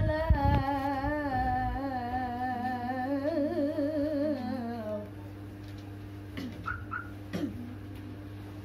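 A young woman's voice reciting the Qur'an in melodic tilawah style, drawing out one long ornamented phrase with a wavering, rising and falling pitch. The phrase ends about five seconds in, leaving a steady low hum and a few short faint sounds.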